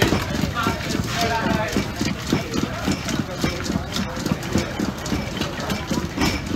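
Rhythmic knocking, about three to four strokes a second, with voices in the background.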